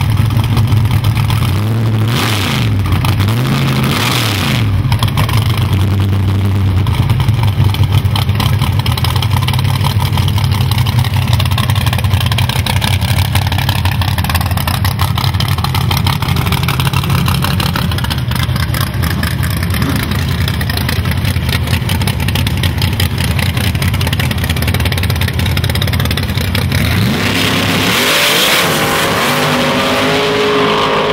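Drag-race car engine running loudly and steadily at idle, revved briefly about two to four seconds in and again with a rising rev near the end.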